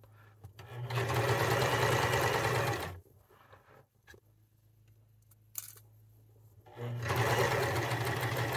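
Domestic sewing machine stitching a zigzag seam through knit fabric, in two runs: about two and a half seconds of sewing, a pause with a faint click, then sewing again from about seven seconds in.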